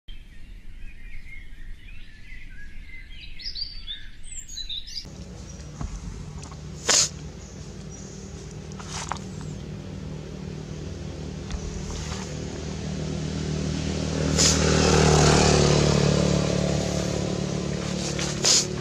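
Birds chirping for about the first five seconds. Then comes outdoor ambience with a steady low hum and a few sharp clicks, swelling into a louder rush of noise around fifteen seconds in.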